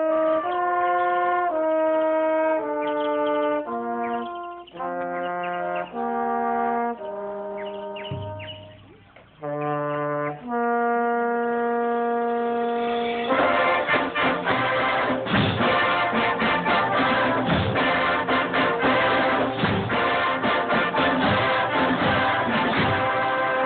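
Drum and bugle corps horn line playing a sequence of long held brass chords separated by short breaks. About halfway through, the full corps comes in louder with a busy, rhythmic passage and percussion hits running through it.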